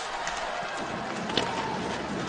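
Rink sound of an ice-hockey game: a steady crowd hum with skate and stick noise on the ice, and one sharp click of stick on puck about one and a half seconds in.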